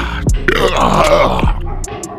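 A man groaning and grunting through clenched teeth, a strained reaction to the carbonation burn of just having chugged a boot of sparkling water. A hip-hop beat with deep bass hits plays underneath.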